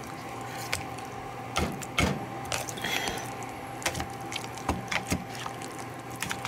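A wire potato masher being pushed through boiled potatoes softened with butter and milk in a mixing bowl. It makes irregular wet, squelching strokes with short sharp knocks, about one or two a second.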